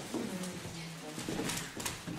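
Indistinct, low-pitched voice talking, with two short clicks about a second and a half in.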